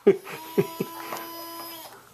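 Electric motor inside a FurReal Friends Biscuit robotic toy dog whirring with a steady even whine for about a second and a half as the toy moves. Over the first second there are a few short falling yips or laughs.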